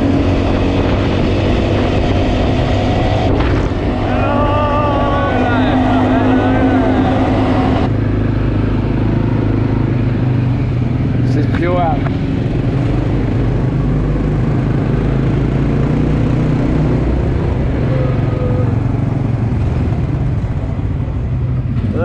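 Quad bike engine running steadily under way, a continuous low drone with road and wind noise. Voices are heard over it a few seconds in and again briefly about halfway.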